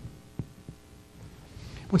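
A pause in a man's speech, filled by a faint steady hum, with two soft clicks about half a second in. His voice comes back right at the end.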